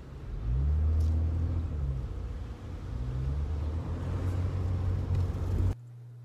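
Car cabin noise while driving: a heavy low rumble of engine and road, with the engine note rising and falling a few times. It cuts off suddenly near the end.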